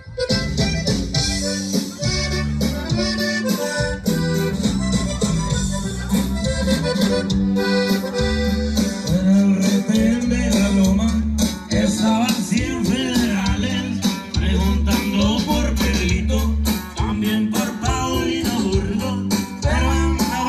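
Live norteño band playing with the accordion leading over a steady, heavy bass line, the song starting right at the beginning.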